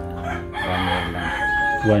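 A rooster crowing: one long call that starts about half a second in and ends just before two seconds.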